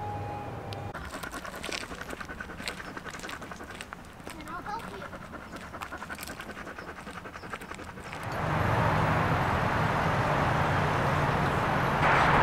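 Dog panting rapidly and evenly. About eight seconds in, a louder steady rushing noise with a low hum takes over.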